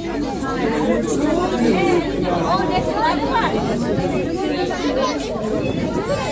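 Several people talking at once, an indistinct chatter of overlapping voices.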